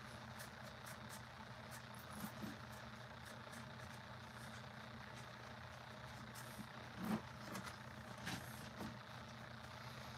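Steady low hum of room tone with faint ticks, and a few soft knocks, the loudest about seven seconds in.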